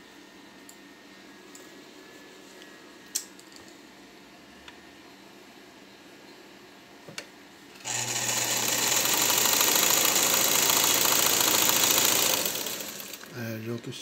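Vigorelli Robot sewing machine running for about five seconds, stitching a decorative stitch through two layers of cotton fabric. It starts about eight seconds in, after a few faint clicks, and winds down to a stop near the end.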